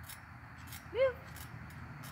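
A child's short, high-pitched shout about a second in, its pitch rising then falling.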